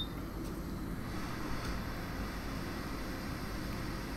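Steady hiss of air from a hot air rework station blowing over a phone logic board to melt the solder under a small component, after a small click at the start.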